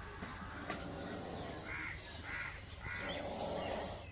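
A bird calling three times, about half a second apart, starting a little under two seconds in, over steady outdoor background noise.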